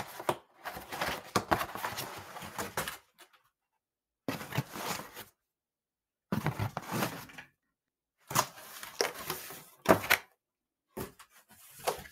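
A cardboard pizza box being handled: the lid opened, a slice grabbed and the lid closed. It comes as several separate bursts of rustling, scraping and thumping, with silence between them. The loudest is a sharp knock near the ten-second mark.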